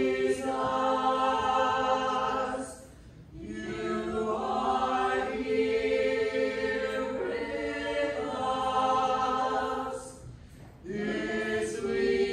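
A group of voices singing a hymn for the procession of the Blessed Sacrament, in long held notes, with two short pauses between phrases, about three seconds in and near the end.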